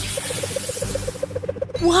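Edited-in comic sound effect: a sudden hissing rush with a fast fluttering tone underneath, about ten flutters a second, lasting about a second and a half, the kind laid over sped-up 'job done in a flash' footage. A voice says 'What?' at the end.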